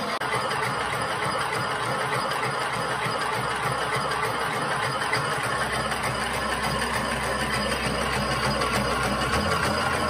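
The belt-driven electric motor and rod drive of one half of a 5-inch-gauge model Rhaetian Railway Ge 6/6 I locomotive run steadily on a bench test stand: wheels, gearing and side rods turning with a mechanical clatter. A deeper hum comes in about halfway through.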